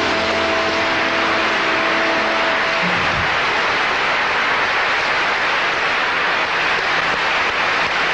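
The last held notes of a song fade away in the first couple of seconds, leaving loud, steady hiss like static.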